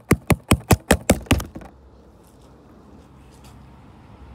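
A quick run of sharp taps, about five a second, stopping after about a second and a half, then only low background noise.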